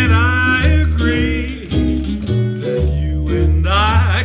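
Jazz duet of guitar and upright bass, the bass walking through low notes, with a man's wordless, scat-like vocal lines sliding over them.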